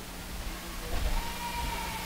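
Room tone in a pause with no talking: a steady low electrical hum, with a faint held tone coming in about a second in.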